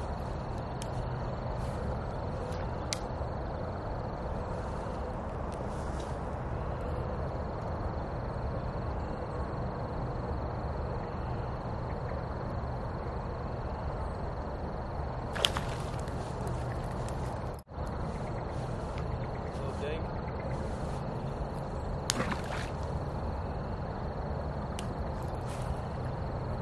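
Steady outdoor pond ambience with a faint steady high tone running through it, broken by two brief sharp swishes about seven seconds apart, a spinning rod being cast.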